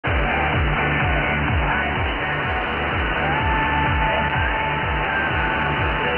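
Music with a steady beat broadcast by the Dutch shortwave pirate Mike Radio on 6301 kHz, received on a software-defined radio in synchronous AM. It sounds thin and narrow, with a constant hiss of shortwave static under it.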